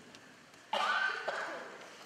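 A person coughs once, sharply, about two-thirds of a second in. The cough lasts under a second and then fades.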